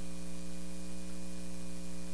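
Steady electrical mains hum, one low tone with a ladder of evenly spaced overtones, over a faint hiss.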